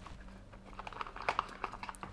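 Hands handling a cardboard phone box and lifting out a coiled USB cable: soft rustling with a run of small clicks that thickens about a second in.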